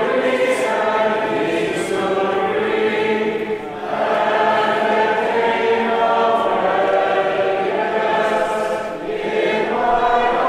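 Many voices singing a hymn together in long held phrases, with short breaks for breath about four seconds in and near the end.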